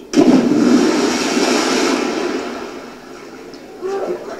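People plunging from a high platform into a lake: a sudden big splash of water that fades away over about three seconds, heard from a film soundtrack through a room's speakers.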